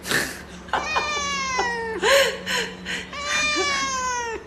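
Domestic tabby cat meowing: two long, drawn-out meows that slide down in pitch, with short meows between them.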